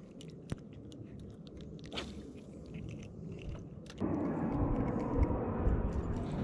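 Small scattered clicks and rattles as a just-caught white bass and its lure are handled. About four seconds in, a steady low rushing noise starts abruptly and becomes the loudest sound.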